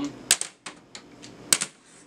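A handboard's deck and wheels clacking sharply on a folding tabletop as the board is popped, flipped and landed: a hard clack just after the start, a few lighter taps, and another hard clack about a second and a half in.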